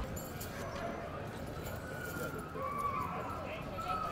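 Sled dogs whining and yelping in short, wavering calls over a steady background of crowd chatter.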